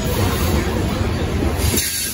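Freight train of covered hopper cars rolling past at close range: a steady low rumble of steel wheels on rail that drops off somewhat near the end.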